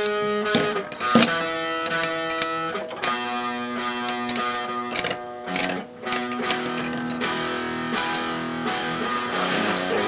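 Guitar-led background music, with a few sharp clicks scattered over it from two spinning Beyblade tops knocking together in a plastic stadium.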